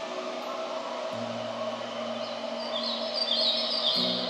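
Small birds chirping in quick runs during the second half, over soft sustained low music notes and a steady ambient hiss.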